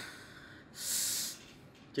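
A person breathing out hard once, a short breathy hiss of under a second about half a second in.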